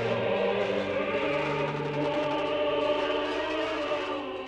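Soundtrack music: a choir singing sustained chords.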